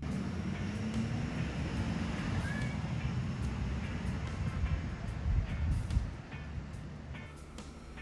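Flatbed tow truck's engine running, a steady low rumble, with a short high chirp about two and a half seconds in.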